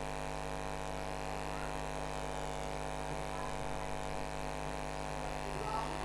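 Steady electrical mains hum in the recording, a constant buzzing drone that does not change.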